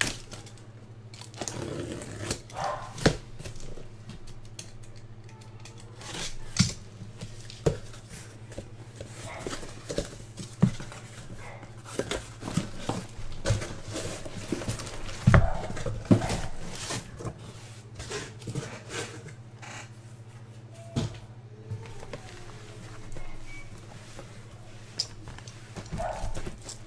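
A cardboard shipping case being cut and torn open by hand, then its boxes handled, with scattered sharp clicks, scrapes and rustles of cardboard and the loudest knock about halfway through. A steady low hum runs underneath.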